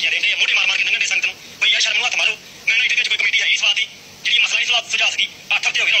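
A person speaking in several short stretches with brief pauses, sounding thin and tinny like a voice over a telephone.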